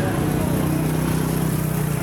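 Car engines running in slow street traffic close by, a steady low hum, with voices mixed in.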